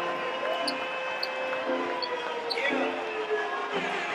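Soft background music: a quiet passage of a gospel/R&B song with sustained held notes and short recurring chords, with a few faint ticks.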